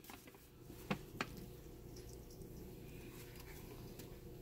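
Quiet room tone with two faint, brief clicks about a second in.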